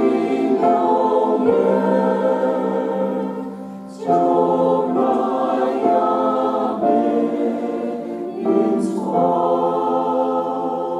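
Mixed church choir singing a slow hymn in harmony with grand piano accompaniment, in long phrases with a short breath break about four seconds in and another near nine seconds.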